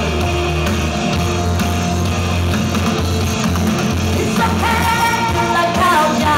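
Live pop duet: a male and a female singer performing into microphones over loud instrumental accompaniment with a heavy, steady bass. A sung melody line stands out clearly from about four seconds in.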